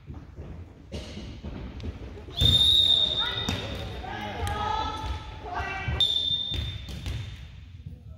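A referee's whistle blows sharply about two and a half seconds in, and again about six seconds in, during a youth volleyball rally in a gym. Between the blasts come thuds of the ball being hit and high voices calling out.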